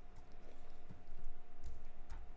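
A few light clicks and soft knocks of a computer mouse being clicked and moved on a desk, over a steady faint electrical hum.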